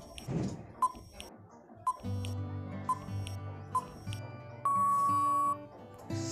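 Countdown timer sound effect: four short beeps about a second apart, then one longer beep near the end, over soft background music with held low notes.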